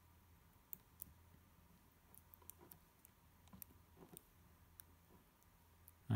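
Near silence with faint, scattered clicks of small extruder parts being handled.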